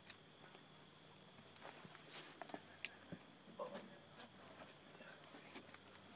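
Near silence outdoors: a faint steady high insect chirring, with a few soft scattered clicks and rustles from someone moving and handling the arrow at the target.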